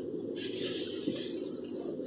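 Steady low hiss and hum of a quiet car cabin, with a brief higher hiss at the start and one faint tick about a second in.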